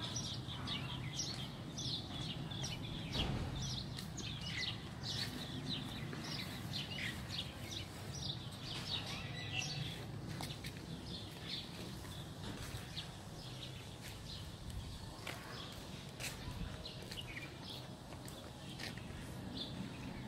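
Outdoor ambience with many small birds chirping in quick short calls, over a faint steady low background hum.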